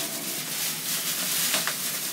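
Thin plastic grocery bag crinkling and rustling as it is handled and pulled over a dish, with a few sharper crackles.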